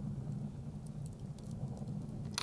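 Wood fire burning in a metal chiminea, giving faint scattered crackles, over a low steady hum.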